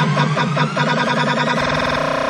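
Moombahton build-up: a synth riser climbing steadily in pitch over a fast repeated note roll that quickens near the end.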